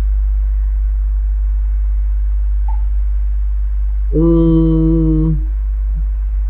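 A steady low hum throughout, with one held hummed 'mmm' from a person about four seconds in, lasting just over a second.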